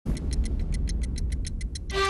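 Clock ticking sound effect, fast and regular at about eight ticks a second, over a low rumbling drone.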